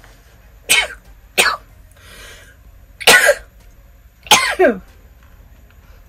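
A woman coughing four times over about four seconds, short separate coughs. She is irritated by a spray she says she used too much of.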